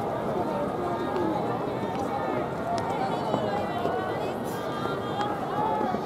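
Crowd in baseball stadium stands chattering, many voices talking at once in a steady murmur, with a few faint clicks.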